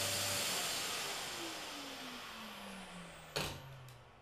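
Workshop dust extractor winding down after being switched off: its motor whine falls steadily in pitch over about three seconds while the rush of air fades. A single sharp click comes near the end.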